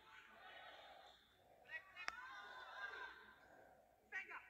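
Faint sounds of a basketball game in a gym: distant players' voices and calls, with a single sharp knock about two seconds in.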